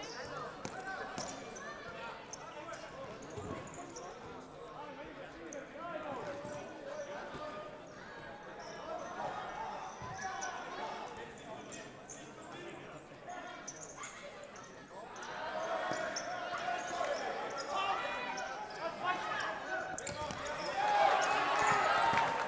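Futsal ball being kicked and bouncing on the hall floor, with players' indistinct shouts in a reverberant sports hall. The voices grow louder in the last third.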